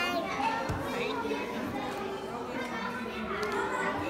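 Indistinct background voices of children and adults talking and playing, with no single clear speaker.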